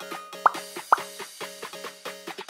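Light, bouncy background music of short plucked notes, with two quick rising pop sound effects about half a second and a second in.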